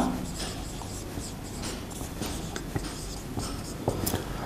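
Marker pen writing on a whiteboard: a quiet series of short, scratchy strokes.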